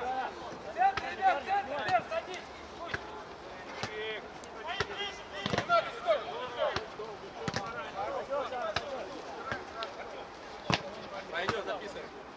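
Footballers shouting to each other during play, with scattered sharp knocks of the ball being kicked.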